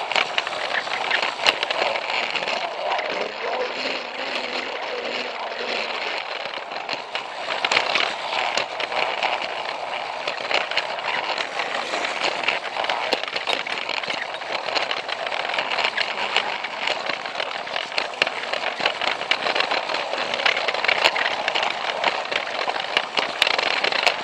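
Battery-powered Plarail toy train running on plastic track, heard from a camera riding on it: a steady rattling run of motor and gears with many sharp clicks from the wheels on the track.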